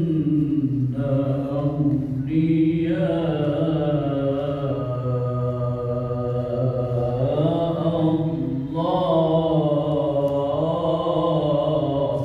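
A man's solo, unaccompanied religious chanting in long, drawn-out, ornamented notes, with short breaks for breath between phrases.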